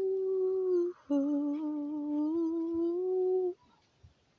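A woman humming unaccompanied: one held note, a short break about a second in, then a longer, lower note that rises slightly before stopping.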